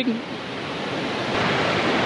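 Mountain stream running over rocks: a steady rush of water.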